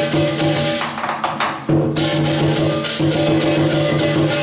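Lion-dance percussion band playing: drum with clashing cymbals and ringing gong-like tones in a driving rhythm. It eases off about a second in, then comes back with a loud clash just before the two-second mark.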